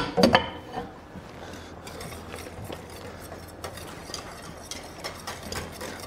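A wire whisk stirring roux into boiling stock in a stainless steel stockpot, with light, irregular clinks and scrapes of metal against the pot. A couple of louder clinks come just after the start.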